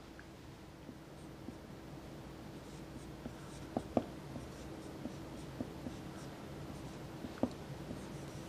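Marker writing on a whiteboard: faint squeaks and taps of the tip as symbols are written, with a few sharper taps about halfway through and once more near the end.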